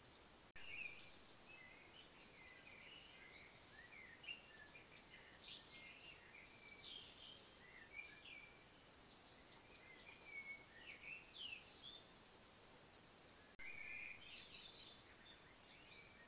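Faint bird calls: many short chirps and whistled notes that slide up and down in pitch, scattered over a steady hiss.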